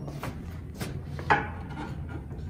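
Wooden upright piano lid being handled: a few soft knocks and rubbing as the hinged top lid is taken hold of and lifted.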